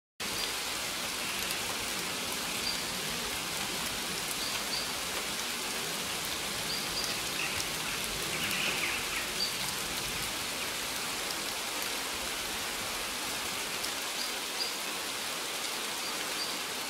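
Steady rush of a waterfall's falling water, with short faint bird chirps now and then.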